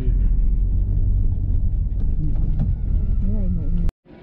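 A steady low rumble with faint talking over it.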